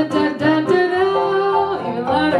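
Live pop-folk song: singing over a strummed acoustic guitar and a Yamaha keyboard, with one long held sung note in the middle.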